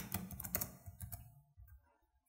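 Faint typing on a computer keyboard: a quick run of keystrokes in the first second or so, then it stops.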